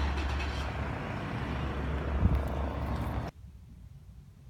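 Steady low rumble of outdoor vehicle traffic, with a single thump a little past two seconds in. After about three seconds it cuts off abruptly to the much quieter background inside a parked car.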